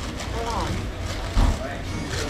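Faint background voices over a steady low room rumble, with a single short low thump a little past halfway.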